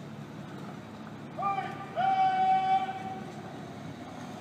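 A shouted military drill command across an open plaza: a short call, then a long drawn-out held note with a scooping start, about two seconds in.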